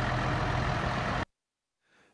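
Steady roadside vehicle noise, traffic and a running truck engine with a low rumble, cutting off abruptly a little over a second in, followed by silence.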